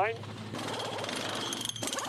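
Pneumatic wheel guns rattling in rapid bursts as a Supercars touring car's wheel nuts are run during a pit-stop tyre change, with a brief dip near the end.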